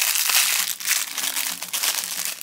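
Thin clear plastic wrapper crinkling as fingers work it open around a small toy figure: a dense, crackly rustle with a brief lull about two-thirds of a second in.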